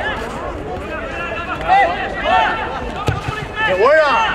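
Distant shouting voices across an outdoor football pitch, calls rising and falling in pitch, with a single sharp knock about three seconds in.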